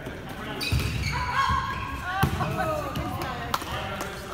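A volleyball thumping twice in a gymnasium, louder about halfway through and sharper near the end. Girls' shouts and calls carry between the hits.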